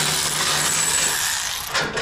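Cordless electric ratchet running, spinning a bolt out of a scissor lift's steel guardrail while a wrench holds the nut. It is a steady motor whir with a rattle, and it stops just before the end.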